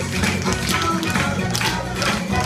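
Tap shoes of several dancers striking a wooden floor in quick, irregular clicks, over background music.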